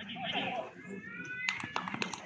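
Footballers' voices on the pitch: brief shouting, then one long rising call, followed by a few sharp knocks in the last half-second.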